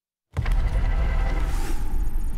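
A broadcast promo's opening sound effect cuts in abruptly after a brief silence: a loud, deep rumble with a whooshing hiss, leading into the promo's voice-over.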